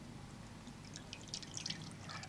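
Surplus water draining out of a pot of freshly soaked horticultural vermiculite and dripping back into a bowl of water: faint, irregular drips that become more frequent from about halfway through.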